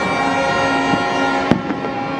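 New Year's fireworks and firecrackers going off, with one sharp loud bang about one and a half seconds in and smaller pops around it, over a background of steady held tones.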